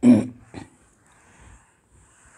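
A brief non-speech vocal sound from the lecturer right at the start, then the faint, continuous rubbing of a handheld eraser wiping a whiteboard.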